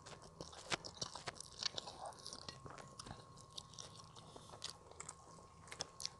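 A person chewing and biting mouthfuls of yellow rice and fried noodles eaten by hand, faint and close: soft, irregular clicks from the mouth throughout.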